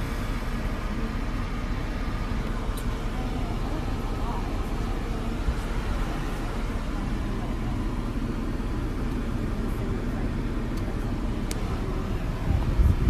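Steady road and engine noise heard inside a car's cabin, with a few faint clicks.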